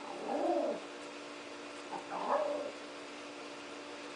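Two short animal calls that bend up and down in pitch, one near the start and one about two seconds in, over a faint steady hum.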